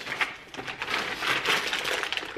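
Plastic packaging crinkling and rustling as small bags of easel hardware are handled and opened, with scattered small clicks.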